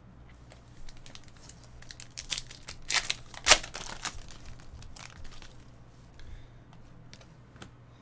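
Topps Finest baseball cards being handled and flipped through by hand, clicking and rustling against each other in short irregular ticks, with two louder snaps about three and three and a half seconds in.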